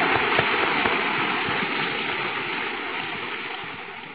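Audience applauding, a dense mass of hand claps that gradually dies away.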